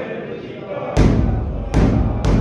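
A large ceremonial drum, the nagara kettle drum, starts being beaten about halfway through. Two heavy, deep strikes come less than a second apart, each ringing on, over a murmur of voices.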